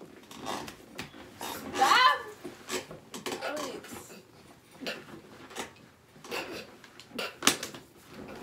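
A young woman's voice in short bursts, one loud pitched cry or exclamation about two seconds in, amid scattered knocks, clicks and rustling from movement around a gaming chair.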